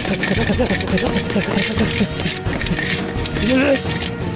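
A person's voice making short wordless sounds, with a rising pitch near the end.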